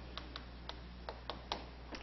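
Chalk clicking against a chalkboard while a word is written: a run of faint, sharp taps, about seven in two seconds.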